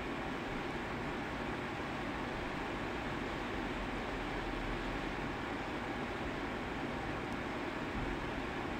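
Steady, even background hiss with no distinct events: room noise on the microphone.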